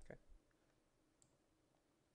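Near silence after a spoken "okay", with one faint computer mouse click a little over a second in.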